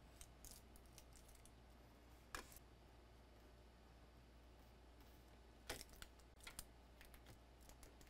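Near silence: low room hum with a scattering of faint short clicks, the clearest about two and a half seconds in and again just before six seconds.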